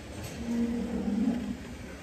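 A cow mooing in the background: one long, low call lasting about a second.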